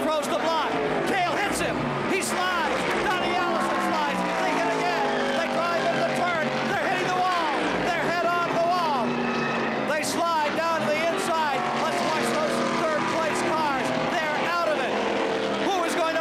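Stock cars' V8 engines running at racing speed, their pitch falling as they go by, under a crowd of many voices shouting and cheering.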